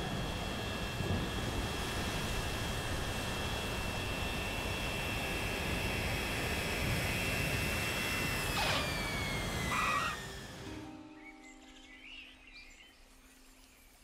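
Animated jet airliner landing in a rainstorm: a steady jet-engine whine over the noise of wind and rain. About eight and a half seconds in, the whine slides down in pitch and there is a brief knock as the plane touches down. The noise then fades away to a faint background.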